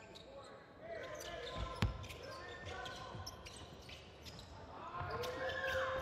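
Live basketball court sound: a ball bouncing on the hardwood floor in scattered thuds, one louder about two seconds in, with sneakers squeaking on the court near the end and faint voices in the hall.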